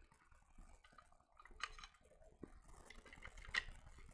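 Faint clicks and rubbing of plastic model-kit parts, the hull pieces of a Space Marine Gladiator tank, being handled and pressed together, with a sharper click about one and a half seconds in and another near the end.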